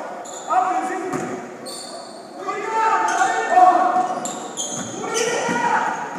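Basketball game in a gymnasium: voices calling out, sneakers squeaking on the hardwood court, and a ball bouncing. The short high squeaks come every second or so.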